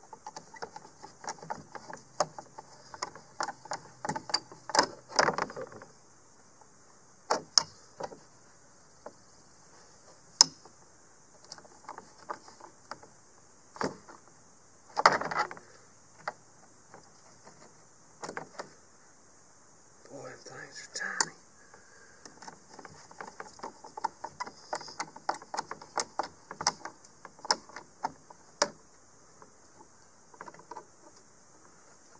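Hand tools working on an RV roof vent lid: a screwdriver turning a screw into the lid's metal hinge bar, with small clicks and knocks of tools against metal and plastic. The clicks come in irregular runs near the start and again in the last third, with a few separate louder knocks in the quieter middle.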